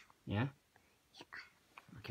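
A voice says "yeah", followed about a second later by faint whispering.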